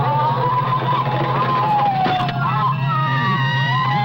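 Electronic music: several slowly gliding, wavering high tones, siren-like, over a steady pulsing low drone, with a couple of sharp clicks.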